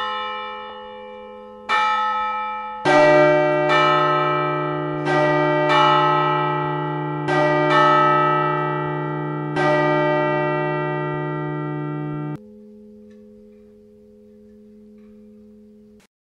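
Bells chiming a slow tune of about nine struck notes, each ringing on and fading into the next. The ringing cuts off suddenly about twelve seconds in, leaving one faint tone ringing.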